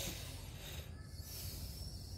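Faint hiss of an electric soldering iron's tip held on flux paste at a leaking radiator seam, steady with a low hum beneath.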